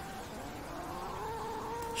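A cat yowling faintly in one long call whose pitch slowly rises and wavers.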